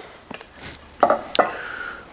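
A wooden board set down on the metal top of a table saw: a few light clicks, then a sharp knock about a second in followed by a short scrape as it is slid into place.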